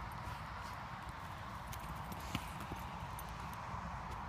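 Small dog digging hard into a mouse hole with its front paws: rapid scratching in loose soil with bits of earth flicking into dry grass, as a run of short ticks and one sharper click a little past halfway.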